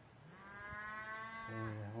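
A cow mooing: one long, steady call lasting about a second and a half.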